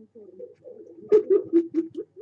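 A woman laughing in quick, rhythmic bursts, loudest about a second in, heard from the soundtrack of a video being played back.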